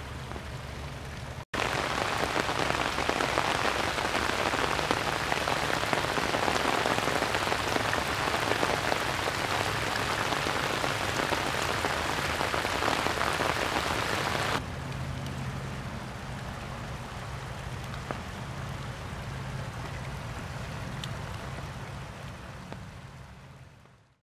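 Rainwater running down a small hand-dug trench and spilling over a little waterfall, a steady splashing hiss. It gets louder after a cut about 1.5 s in, drops back at about 14.5 s and fades out near the end.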